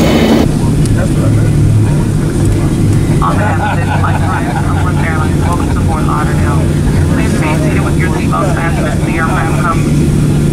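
Steady low drone of a jet airliner's engines heard from inside the cabin while taxiing, with two low humming tones running through it. From about three seconds in, a voice speaks over the drone.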